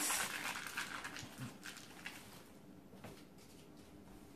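Foil wrapper from a block of cream cheese being crumpled by hand: a crinkling rustle that fades away over the first two seconds, followed by a couple of faint clicks.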